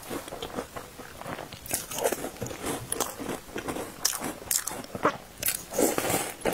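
Close-miked chewing and biting of calcium milk biscuits soaked in milk tea: a run of short, sharp mouth clicks with chewing in between.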